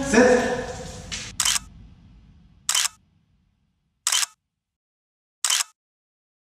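Four identical camera shutter clicks, evenly spaced about a second and a half apart. At the start there is a short voice-like sound, and music fades out.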